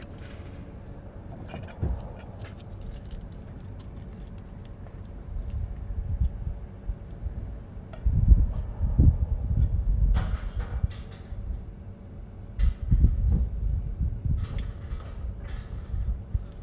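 Wind gusting on the microphone, with a few clinks of aluminium drink cans dropped into a recycling bin some way off, about ten seconds in and again near the end.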